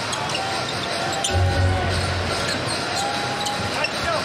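Basketball arena sound: crowd noise with music played over the arena PA in held notes, and a basketball being dribbled on the hardwood court.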